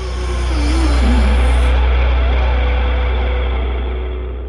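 A deep, loud low rumble from the soundtrack, with faint higher tones above it. It swells over the first second and then slowly begins to fade.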